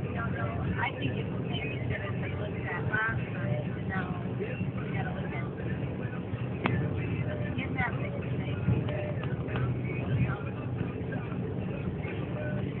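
Car interior road noise, a steady low rumble, with indistinct voices talking on and off over it and a single sharp click about two-thirds of the way through.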